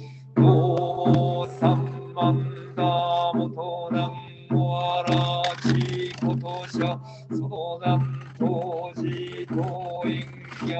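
A monk chanting a Buddhist sutra in Japanese in a low, steady monotone, the syllables coming in short, even beats.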